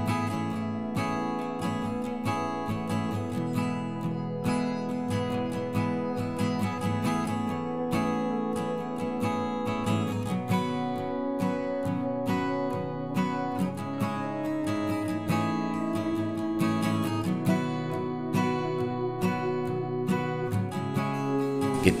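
Background music: acoustic guitar playing steadily throughout, plucked and strummed.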